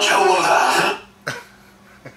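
A man's voice, stopping abruptly about a second in, followed by a short vocal burst as the listener breaks into a laugh.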